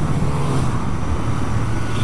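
Single-cylinder engine of a 2011 Honda CBR125 motorcycle running steadily under way, heard from the rider's chest-mounted microphone together with a broad rush of wind and road noise.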